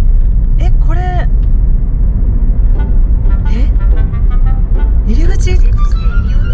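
A car driving along a road, heard from inside the cabin as a steady low rumble of road and engine noise, with a few brief vocal sounds on top.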